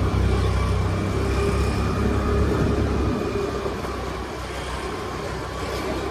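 Motor scooter running as it is ridden slowly along, a steady engine hum with a low rumble that eases off about halfway through.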